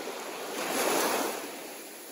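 A shallow ocean wave washing up over wet sand, the rush of water swelling about half a second in and easing off.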